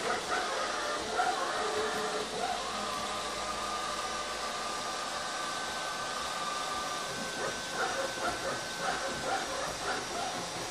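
Aldi Stirling robot vacuum cleaner running across a timber floor: a steady motor whir, with a high whine held from about three seconds in until near the end. Uneven, wavering pitched sounds come and go near the start and again near the end.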